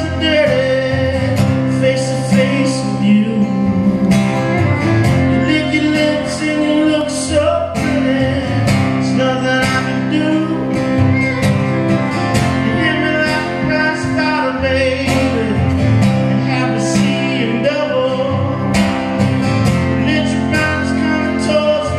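Live country song: a man singing over strummed acoustic guitars, with a fiddle playing along.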